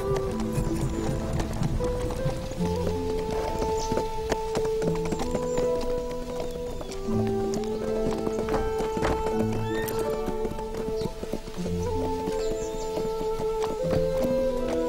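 Background music with long held notes, over horses' hooves clip-clopping and a horse whinnying.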